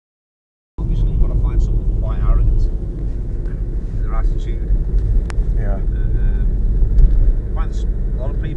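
Steady low rumble of a car heard from inside the cabin, cutting in abruptly just under a second in, with snatches of indistinct talk and a single sharp click over it.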